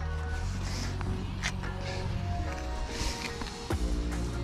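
Background music with sustained low bass notes.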